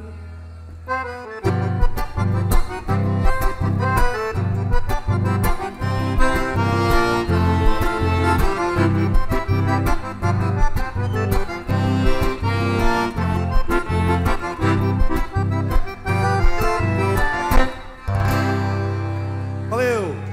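Button accordion playing an instrumental passage of a gaúcho folk song, with a steady pulse of bass notes under the melody and an acoustic guitar accompanying. It closes on a held chord near the end.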